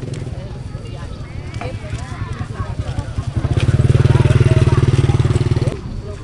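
A motorcycle engine running close by, its low, fast pulsing much louder from about three seconds in and dropping away shortly before the end.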